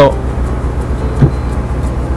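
Chery QQ small hatchback's engine idling steadily with the car at a standstill, a low even hum heard from inside the cabin.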